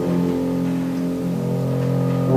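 Piano quintet of piano and bowed strings (violins, viola, cello) playing a passage of held low chords, with the notes shifting a little past halfway.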